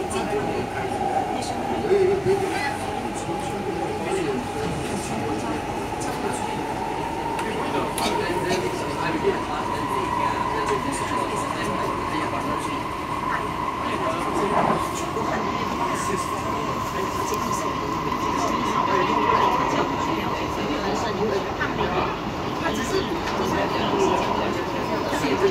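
Cabin noise of an SMRT C151B metro train running on elevated track: a steady rumble with a whine that climbs slightly in pitch over the first ten seconds or so and then holds, with scattered clicks from the wheels and car.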